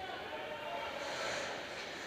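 Ice rink ambience: faint, indistinct voices of hockey players calling out across the ice, with a brief hiss of skate blades scraping the ice about a second in.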